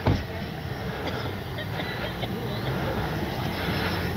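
Radio-controlled Freewing JAS-39 Gripen jet's 12-blade 80 mm electric ducted fan in flight at a distance: a steady rushing hum that grows slightly louder toward the end.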